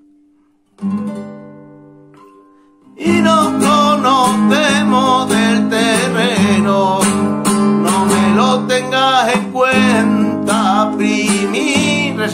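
Nylon-string classical guitar with a capo: one chord strummed a little under a second in and left to ring out, then from about three seconds in a steady rumba strumming rhythm, with a man singing over it.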